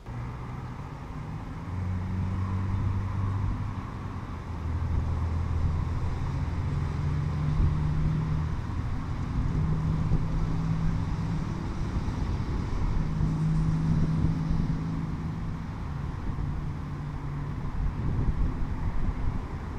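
Outdoor background noise: a steady low rumble with a low humming drone that changes pitch now and then, like distant road traffic.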